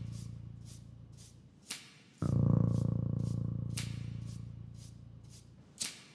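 Mouth harp drone in a layered music track: a low, steady-pitched twang that fades through the first two seconds, then a new one starts sharply about two seconds in and fades again. A short sharp click comes just before the new drone and again near the end, over a steady rhythm of short breathy hisses, about two to three a second.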